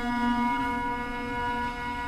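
Duduk and kamancheh playing a quiet, held note in an improvised duet; the lower part of the sound fades about half a second in, leaving a softer sustained tone.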